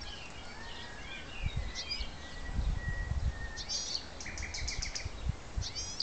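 Nightingale singing short, varied phrases, with a quick run of repeated notes in the second half, over low rumbling bumps.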